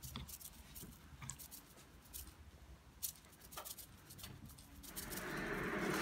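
Light, scattered clicks and taps of hands handling a spice shaker and seasoned fish on a wooden cutting board. About five seconds in, a steady hiss rises from the lit gas camp stove and its pan of melted butter.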